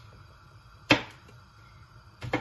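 A single sharp knock about a second in, with a short fading tail.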